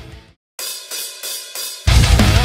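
Four evenly spaced cymbal strokes, thin and high with no bass, counting in a heavy metal song. The full band with a distorted seven-string electric guitar comes in loud right at the end. Before the strokes, the preceding music fades to a brief silence.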